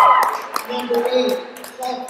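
Girls' voices: the end of a loud, high-pitched shout that cuts off just after the start, then talking with a few sharp claps.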